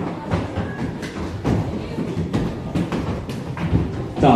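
Background music with scattered thumps and knocks: footsteps of people running across a wooden dance floor, and chairs being knocked.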